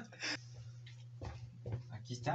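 A quiet room with a steady low hum and a few faint short noises, likely breaths, after the speech stops.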